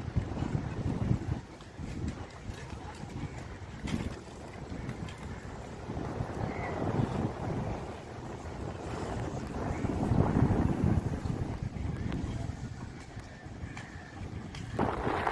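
Wind buffeting the microphone: an uneven, gusting rumble that swells and falls, loudest a little past the middle.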